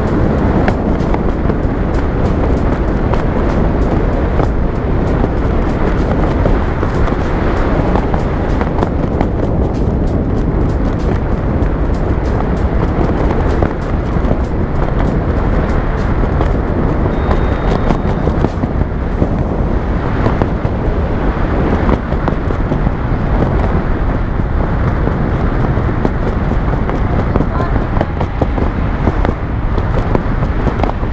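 Wind buffeting the camera microphone during a tandem parachute descent under canopy, a loud, steady rushing with no breaks.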